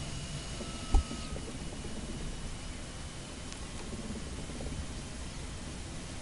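Steady hiss of room noise on a microphone, with a single low thump about a second in.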